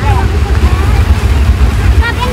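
Wind buffeting the microphone: a loud, uneven low rumble, with people talking faintly behind it.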